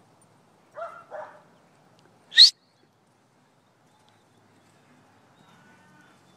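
A stock dog barking twice, short and quick, about a second in, followed a second later by one very brief, sharp, high-pitched rising sound, the loudest moment.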